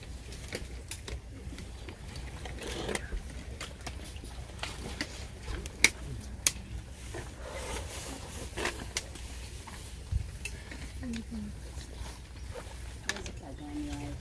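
Binder pages being leafed through and handled, giving soft rustles and a few sharp clicks, over a low murmur of an outdoor crowd and a steady low rumble.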